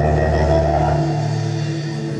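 Live fusion-band music: sustained, held chords over a low bass note that drops out about a second in.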